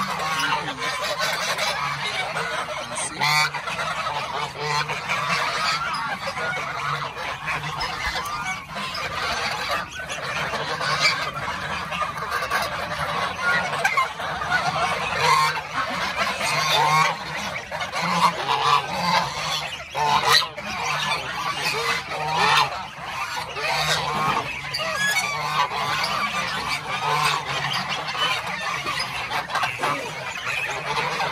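A flock of domestic geese and goslings honking and calling without pause, many voices overlapping, with louder single honks standing out every few seconds.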